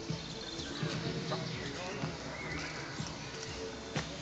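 Indistinct background voices and music with a few light knocks.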